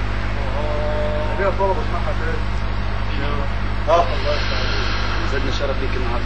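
A steady low electrical hum from a live public-address system, with faint, scattered voices from the listening crowd.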